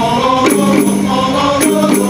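A male qasidah group singing in chorus, backed by jingling frame-drum percussion with sharp strikes about half a second in and again near the end.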